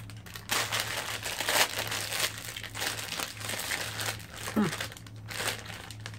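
Clear plastic sweet packet crinkling and rustling as it is handled, with a dense run of irregular crackles for most of the few seconds.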